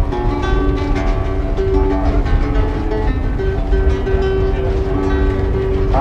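Nylon-string acoustic guitar playing a picked introduction of ringing notes and chords. A steady low rumble from the moving narrow-gauge train carriage runs underneath.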